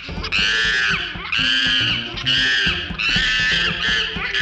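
A high-pitched screech, repeated about five times, each rising and falling, over background music.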